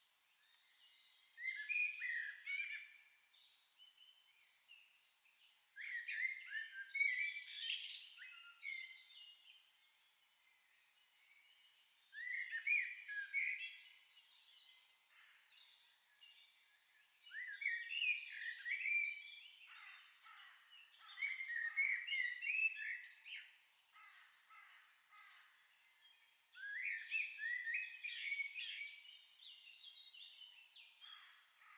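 A songbird singing a short chirping phrase of quick, falling notes about every five seconds.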